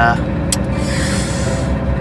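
UD Nissan Quester CGE 370 truck's diesel engine idling, heard from inside the cab as a steady low rumble with an even pulse.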